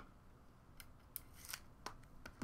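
Faint, short clicks and scrapes of trading cards being handled off camera, a few crisp ticks in the second half.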